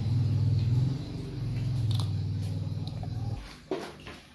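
A steady low engine hum, like a motor vehicle running nearby, that cuts off about three and a half seconds in, followed by a couple of light clicks.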